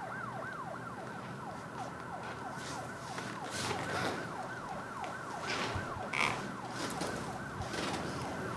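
Faint emergency-vehicle siren in a fast yelp, its pitch rising and falling about three times a second without a break.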